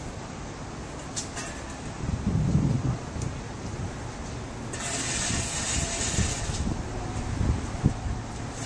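Road traffic and idling vehicle engines as a steady low rumble, swelling a little about a quarter of the way in, with a hiss lasting about two seconds just past the middle.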